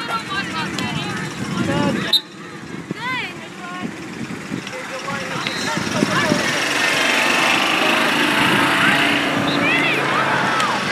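Outdoor field hockey match ambience: distant shouts and calls from players and people along the sideline over wind rumble, with a single sharp knock about two seconds in. The babble of voices grows denser in the second half.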